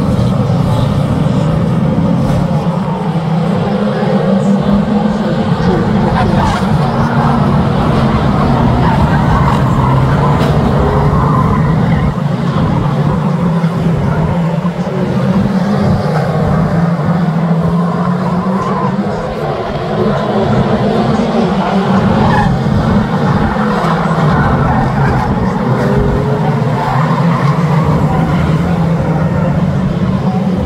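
A pack of 2-litre National Saloon stock cars racing, many engines running hard together in a loud, continuous mix with no breaks.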